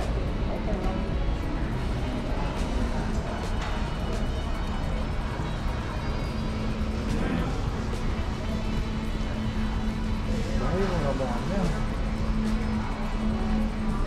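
Background music laid over the steady low rumble and distant voices of a large bus-terminal concourse.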